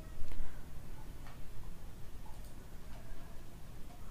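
A few faint, scattered ticks from a computer mouse over a low steady background hum.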